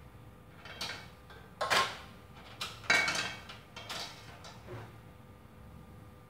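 Kitchenware clattering as it is handled: about five knocks and rattles of dishes and utensils, the loudest two near two and three seconds in, some ringing briefly.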